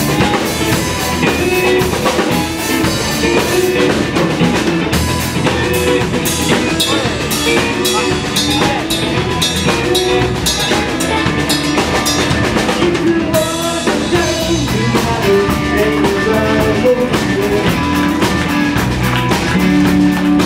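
Live blues band music: a Stratocaster-style electric guitar plays melodic lines over a drum kit keeping a steady beat with cymbals.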